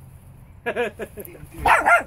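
Young puppies giving a run of short, high barks and yips, growing louder near the end.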